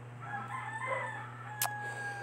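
A faint, drawn-out animal call with a few pitched tones, held steady near the end, and one sharp click just past the middle.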